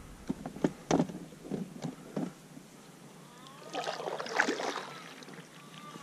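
Kayak paddling: a few light knocks in the first couple of seconds, then a paddle stroke washing through the water about four seconds in.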